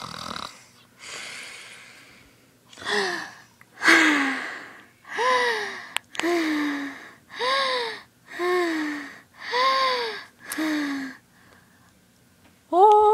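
A voice imitating cartoon snoring: wheezy breaths alternate with whistled exhales, each whistle arching up and then down in pitch, about one breath a second and louder after the first few.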